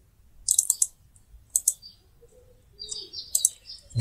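Small birds chirping in the background: three short bursts of high chirps, about half a second in, in the middle and near the end.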